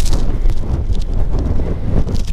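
Strong wind buffeting the microphone: a loud, uneven low rumble that surges and dips with the gusts.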